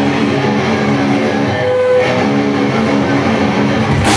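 Amplified electric guitars in a live metal band holding long ringing chords, with the chord changing about halfway through.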